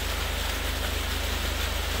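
Small waterfall pouring over slate rock ledges into a shallow pool, a steady rushing of falling water.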